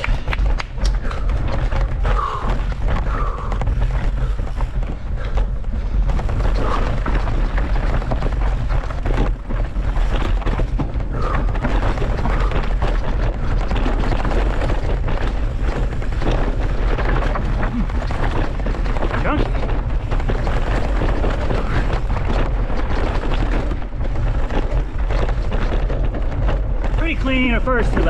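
Wind buffeting a helmet or bike-mounted camera's microphone as a cross-country mountain bike is ridden fast over rough singletrack: a heavy, steady rumble with many short rattles and knocks from the bike, and brief scraps of voice.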